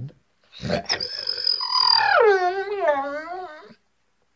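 A young dog howling on a countdown cue: one long howl that starts high, slides down in pitch midway, wavers, then breaks off.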